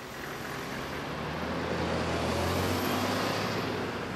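Double-decker bus driving past close by in street traffic, its engine rumble and road noise swelling and then fading.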